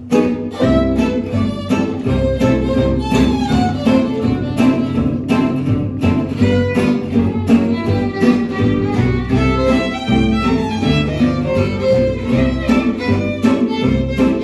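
Live acoustic string band of two violins, acoustic guitars and upright bass striking up a swing tune at once, the violins carrying the melody over strummed guitar rhythm and bass.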